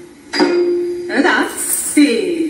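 Carnatic vocal accompaniment for a Bharatanatyam varnam: a voice sings a held note from about a third of a second in, then bends into a phrase, with bright metallic clinks near the end.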